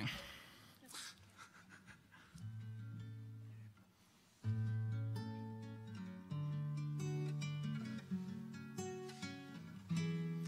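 Acoustic guitars playing a song's introduction: ringing notes begin about two seconds in, break off briefly near four seconds, then come back louder as a run of held chords.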